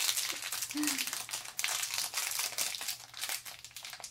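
Shiny plastic toy wrapper crinkling and crackling as fingers unfold and peel it open, a continuous run of small crackles.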